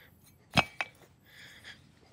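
A sharp click about half a second in, a softer one shortly after, then faint rustling.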